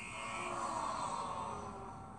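Cartoon quiz-show buzzer sounding one long buzz that fades near the end, heard through a TV's speaker.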